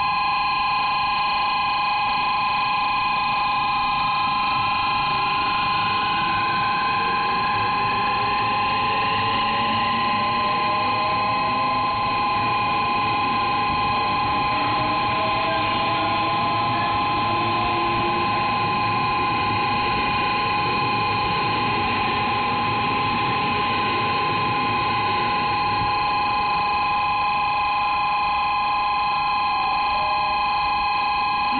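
JR West 683 series electric train pulling out: its motors whine upward in several rising tones as it gathers speed over the first half. A steady, loud electronic platform tone, like a buzzer or alarm of several high pitches, sounds the whole time over it.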